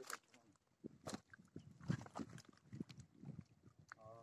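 Faint, irregular clicks, knocks and rustles of a fishing rod and reel being handled while a small tilapia is played and reeled in.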